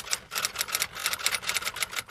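Typewriter-style typing sound effect: rapid, uneven key clacks, several a second, accompanying on-screen text being typed out.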